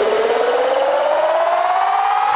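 Electro track build-up: a buzzy synthesizer tone climbing steadily in pitch, with no drums.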